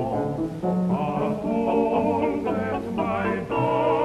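Male close-harmony vocal group singing together in several parts, with short breaks between phrases about half a second in and again near the end.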